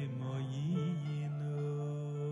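Slow, sad song: a low voice holding wavering notes over a sustained accompaniment, between sung lines.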